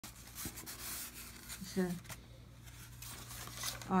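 Paper and tissue paper rustling and crinkling in short, uneven bursts as hands open a gift box.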